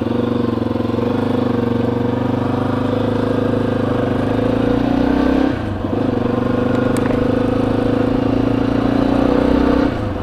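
Yamaha XT250's single-cylinder four-stroke engine running steadily while the motorcycle is ridden along a road. The engine note drops briefly about halfway through and again at the very end, then picks up again.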